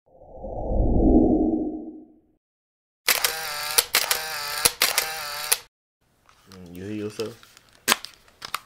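Intro sting for an animated channel logo. First a low whoosh swells and fades over about two seconds. After a short gap comes a bright, processed voice-like sound broken by sharp clicks for about two and a half seconds. Near the end there is a short hummed voice and a single sharp click.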